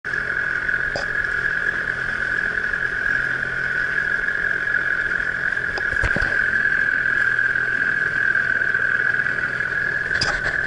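Small outboard motor running steadily with the boat under way: a steady high whine over a low drone, with a couple of light knocks about a second and six seconds in.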